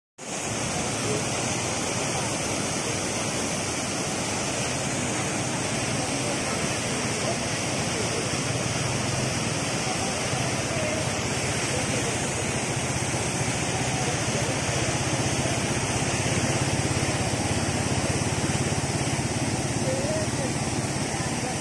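Floodwater rushing across a road, a steady unbroken rushing noise. The river has overflowed after very heavy rain upstream.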